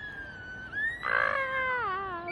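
A cat yowling: long, drawn-out calls that waver slowly up and down in pitch, with a harsher, louder cry about a second in.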